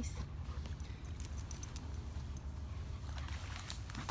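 Faint, scattered metallic jingling, like a dog's collar tags, over a steady low rumble.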